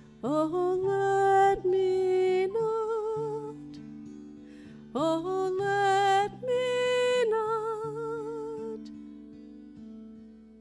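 A high-voiced singer performs a slow worship song, singing two long phrases with a scoop up into held notes with vibrato. The phrases are separated by a brief pause and carried over sustained accompaniment chords with guitar, which fade out near the end.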